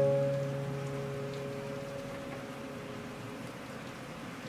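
A soft piano chord of a few notes, struck just before, rings and fades away over the first two to three seconds, over a steady hiss of soft rain.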